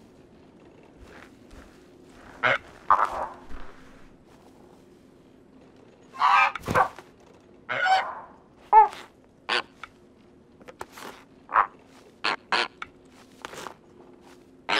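Cartoon flamingos giving short honking calls and scuffling in snow, heard as scattered sudden calls and crunches. A run of short sharp crunchy steps follows in the second half. A faint steady low hum lies underneath.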